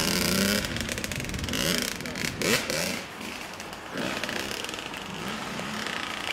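Kawasaki KX100 two-stroke single-cylinder dirt bike engine revving up and down through the throttle as the bike rides away, growing fainter.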